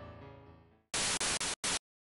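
A piano tune fades out, then after a brief silence a TV-static noise effect plays in three or four short chopped bursts and cuts off suddenly, a video-editing transition sound.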